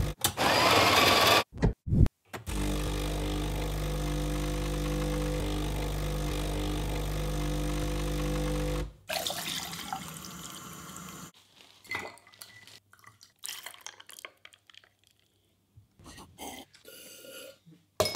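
Espresso machine at work: its built-in grinder runs for about a second and a half, then after a few short bursts a steady electric buzz runs for about six seconds as the pump pulls a shot, and stops suddenly. Then tap water runs into a glass of ice, followed by scattered light clinks of ice and glass.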